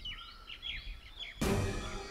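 Birds chirping in short rising and falling calls for about a second and a half, then a sudden loud hit opens dramatic background music.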